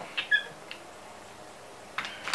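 Carpenter's brace and auger bit being backed out of a drilled hole in wood: a short squeak just after the start, then a sharp click near the end.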